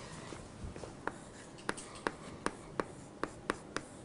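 Hand-writing on a lecture board: a run of about eight short, sharp taps and strokes, beginning about a second in and coming a few per second.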